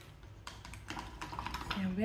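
A quick run of small clicks and taps, a paintbrush knocking against the side of a water cup as it is rinsed. Near the end a short hummed voice sound starts and rises in pitch.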